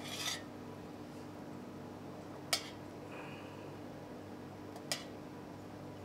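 Three light clinks of a metal ladle-spoon against a stainless steel jug and metal dish as fish stock is spooned out, one at the start, one about halfway and one near the end, over a faint steady hum.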